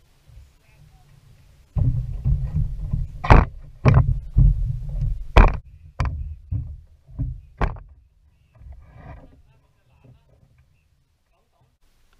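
Bare footsteps on the wooden planks of a pier, heard close through the deck as heavy thuds with several sharp knocks, from about two seconds in until about eight seconds.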